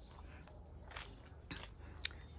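Faint footsteps crunching on leaf-strewn ground, a few soft crackles about one and one and a half seconds in.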